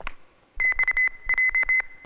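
Hand-held metal detector wand beeping: a quick run of short, high-pitched beeps in two bursts, set off by a metallic dress.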